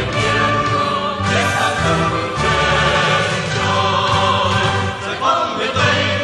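A Vietnamese revolutionary song sung by a choir with instrumental accompaniment, continuing without a break.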